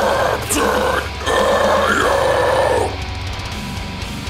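Deathcore song with harsh guttural vocals growled over the backing track: three rough phrases in the first three seconds, the last one the longest, then the instrumental carries on alone.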